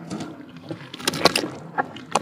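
Hands squeezing and crumbling clumps of wet red dirt in a tub of muddy water: irregular sloshing and splashing, with a busy run of splashes about a second in.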